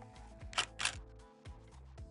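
Soft background music with steady held notes, and two short hissy sounds about half a second in.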